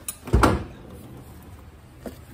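A refrigerator's bottom freezer drawer pulled open on its slides, one short loud rumble and knock about half a second in, followed by a steady low hiss.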